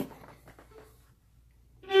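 A fiddle starts playing a tune near the end, after a second or so of near silence, opening on a loud bowed note held on one pitch.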